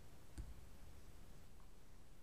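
A single finger tap on the iPad's touchscreen with a faint on-screen keyboard click, about half a second in, then quiet room tone.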